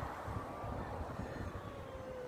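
Steady low outdoor rumble of city and riverside background noise, with faint thin tones drifting above it.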